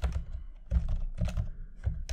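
Typing on a computer keyboard: several keystrokes at an uneven pace as a terminal command is typed out.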